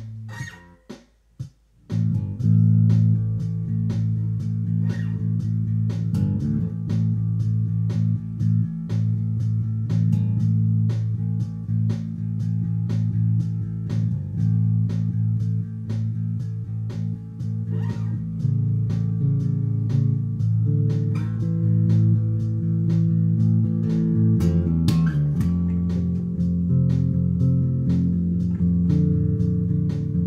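Electric bass guitar played fingerstyle: sustained low notes and chords with frequent plucked attacks. It breaks off briefly about a second in, then carries on, and moves to lower notes about 25 seconds in.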